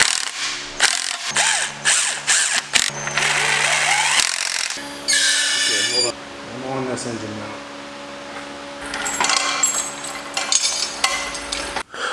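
Cordless impact driver hammering in short bursts over the first few seconds as it runs the bell-housing bolts into the engine block, over background music with singing.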